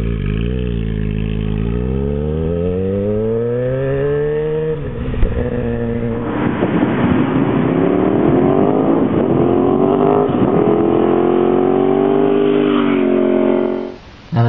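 Kawasaki ZX-6R sport bike with aftermarket exhaust pulling away, its engine pitch climbing steadily for about five seconds. After a brief break, a motorcycle engine climbs again through a long pull with a rushing noise under it, cutting off just before the end.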